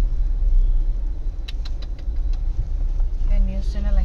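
Steady low rumble of a moving car heard from inside the cabin: engine and road noise. A few light clicks come in the middle, and a voice starts near the end.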